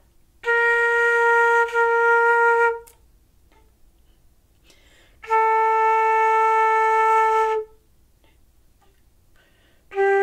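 Concert flute playing long held notes separated by rests of about two and a half seconds, each note a step lower than the last: B-flat, then A about five seconds in, then G starting at the very end. Clear, steady tones of a beginner's long-note exercise.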